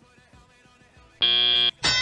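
Field audio cues of a FIRST Robotics Competition match. A steady electronic buzzer tone of about half a second marks the end of the autonomous period. Just before the end, a horn-like tone swoops up into a held note, signalling the start of the driver-controlled period.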